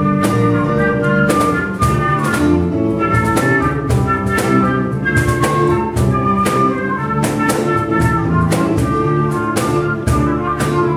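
Live band playing a quick bourrée tune: a transverse flute carries the melody over bass notes and hand percussion keeping a steady beat.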